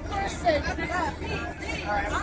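Indistinct voices of passengers talking over one another in an airliner cabin, over the cabin's steady low drone.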